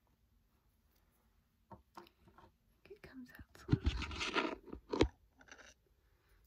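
Close handling noises from refilling an essential-oil diffuser: a few light clicks, then a loud scraping rustle with low thumps about four seconds in, and a sharp knock just after.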